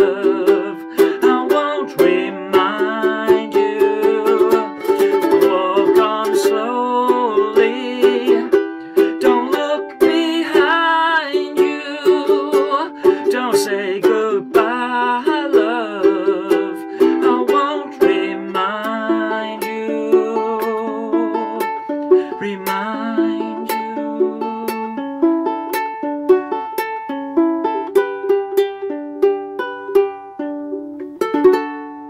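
Kiwaya ukulele played solo, a picked melody with chords. Over the last several seconds it thins to a sparser line of single plucked notes.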